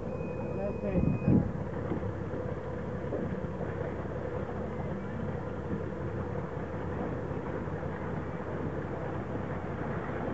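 Motorboat engine running steadily, with a short burst of voices about a second in.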